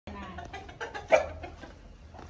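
Domestic chickens clucking in a run of short calls, with one louder short call about a second in.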